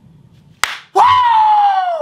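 A single sharp slap, then a man's high falsetto 'ooooh' that rises briefly and slides down in pitch over about a second.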